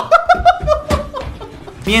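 A person laughing in a quick run of short bursts that fades out within about a second.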